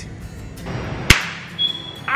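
A swish building into a single sharp crack about a second in, over background music, followed by a brief high steady tone near the end.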